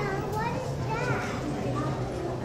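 Background chatter of many people, with high children's voices calling out over it.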